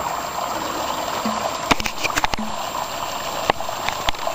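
Water running steadily over the rocks of a garden pond cascade, with a few sharp clicks near the middle.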